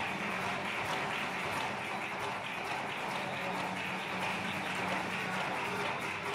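Live flamenco: several palmeros clap rapid, dense palmas with a flamenco guitar beneath and a held pitched note.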